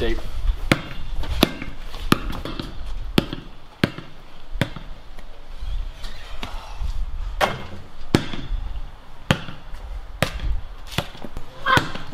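A basketball bouncing on paved concrete as it is dribbled: a string of sharp bounces, roughly one and a half a second, at slightly uneven spacing.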